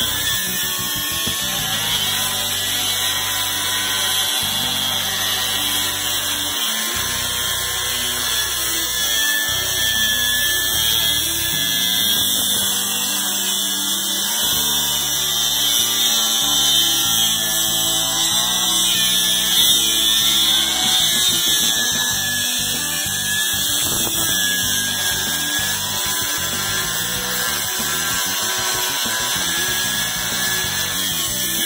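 Angle grinder with a cutoff wheel cutting through the steel of a meat cleaver, a steady high whine that holds throughout.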